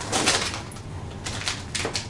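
Clear plastic bags crinkling and rustling as a packaged soft-plastic bait is pulled out of a plastic storage bag. There are sharp crinkles near the start and again about a second and a half in.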